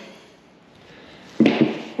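A small metal block plane set down on a plywood workbench: a short knock and scrape about a second and a half in, after quiet room tone.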